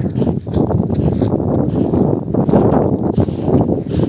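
Wind buffeting a phone's microphone outdoors: a loud, rough, continuous rumble that flutters irregularly.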